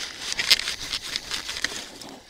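Paper towel crinkling and rustling in nitrile-gloved hands as a rifle firing pin is wiped clean of cleaner and carbon, in a run of small irregular scrubbing crackles that fade near the end.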